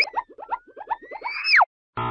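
Cartoon sound effect: a quick upward swoop, then a fast string of short springy boings under a whistle that climbs slowly and drops sharply about a second and a half in.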